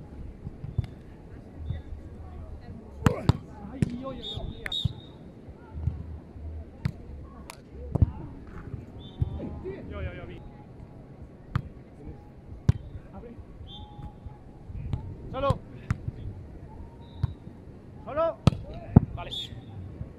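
Beach volleyball rallies: a series of sharp slaps of hands and forearms striking the ball, with a few short shouts from the players.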